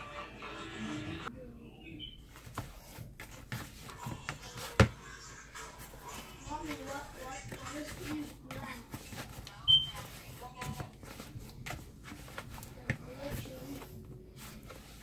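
Hands kneading sticky duff dough in a bowl: soft slaps and irregular knocks of dough and hands against the bowl, with one sharp knock about five seconds in. A short high chirp is heard near ten seconds, and faint background voices come and go.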